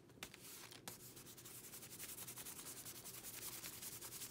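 Hand rubbing quickly back and forth over paper on a collage journal page, smoothing a glued-down piece flat: a faint, fast, even swishing of skin on paper.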